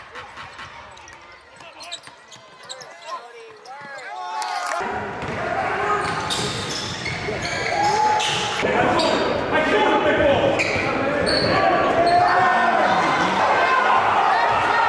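Basketball being dribbled on a gym floor, with players' voices echoing in a large gym. The sound gets louder about five seconds in, with frequent sharp bounces.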